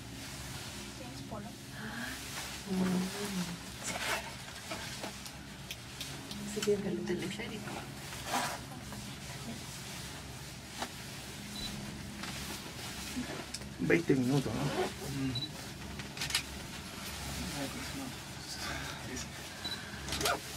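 Indistinct, low chatter of passengers inside a moving cable-car gondola over a steady low hum, with a louder voice about fourteen seconds in.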